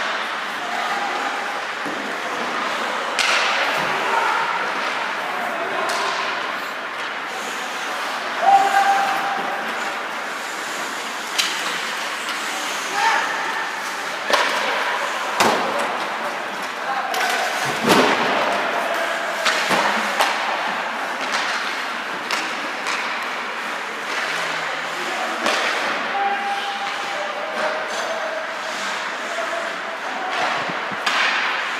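Ice hockey game sounds in an echoing rink: a steady hum of the hall with players' shouts, broken by several sharp bangs of the puck and players hitting the boards and glass. The loudest bangs come about eight and eighteen seconds in.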